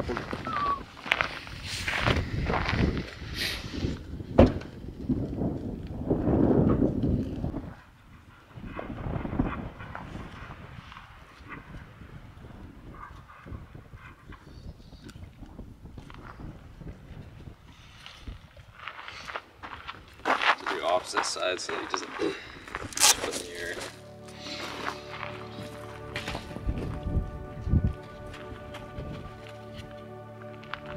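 Rustling and handling noises with scattered soft clicks as boots are strapped onto a dog's paws. Background music with steady held notes comes in about three-quarters of the way through.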